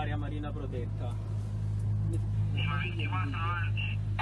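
Coast Guard patrol boat's engine running steadily under way, a low even drone. A man's voice is heard briefly in the second half.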